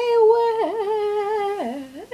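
A woman singing unaccompanied, holding one long note that dips briefly and then slides down in pitch near the end.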